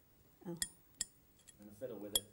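Steel painting knife blade flicked with a fingertip to spatter white paint, giving two sharp metallic pings less than half a second apart.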